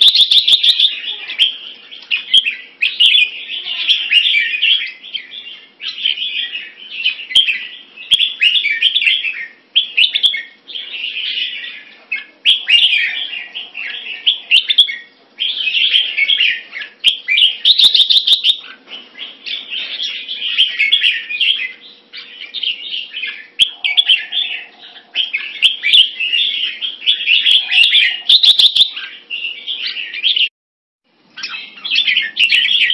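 Red-whiskered bulbul singing: loud, high chattering song phrases of a second or two each, following one another with only short gaps, with a few sharp clicks among them.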